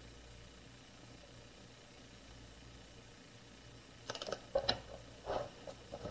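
Quiet room tone for about four seconds, then a short cluster of rustles and taps as transfer tape carrying an adhesive vinyl word is laid onto a plastic binder cover and pressed down by hand.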